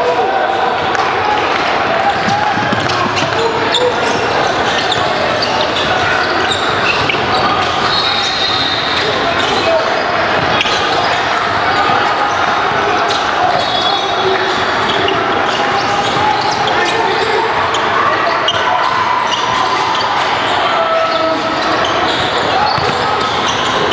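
Live indoor basketball game: a basketball bouncing on the hardwood court, sneakers squeaking now and then, and players and spectators calling out indistinctly, all echoing in a large gym.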